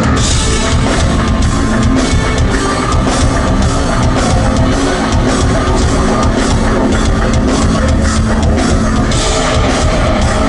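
Heavy rock band playing live and loud: a drum kit beating steadily under guitars, with no pauses.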